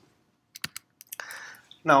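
A few sharp key clicks on a computer keyboard, a cluster about half a second in and more about a second in, after a short quiet pause. They are followed by a short breath-like rustle and the spoken word 'Now'.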